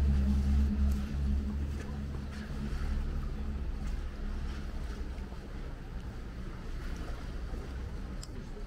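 Motorboat engine running with a low hum, loudest at the start and fading away over the following seconds as the boat moves off.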